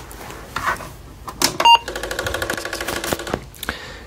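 An Apple IIe boots from a floppy. A click is followed by the computer's short power-on beep, then the 5.25-inch floppy drive gives a rapid rattling clatter for about a second and a half.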